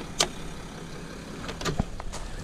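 An engine idling with a steady low hum, broken by a sharp click just after the start and a few lighter clicks about three-quarters through.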